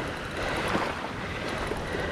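Wind and small waves lapping at the shoreline, a steady hiss with no distinct events.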